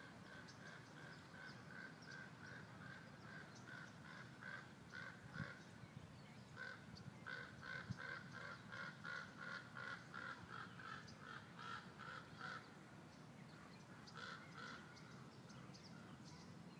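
Faint outdoor bird or animal calling in a fast run of short, even calls, about three to four a second, that stops for a moment about two-thirds through and comes back briefly near the end. Two soft low thumps sound partway through.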